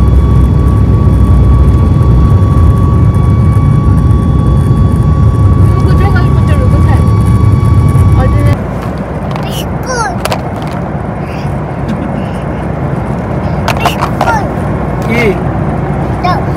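Jet airliner cabin noise during the climb after takeoff: a loud, steady engine rumble with a thin steady whine over it. About eight and a half seconds in it drops suddenly to a quieter steady cabin hum, with faint voices and a few light knocks.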